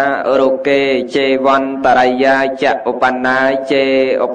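A male voice chanting a Buddhist recitation in long, held, melodic notes that waver and glide in pitch.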